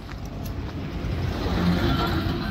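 A small hatchback car driving past at close range on a narrow road, its engine and tyre noise growing louder as it comes up from behind and passes.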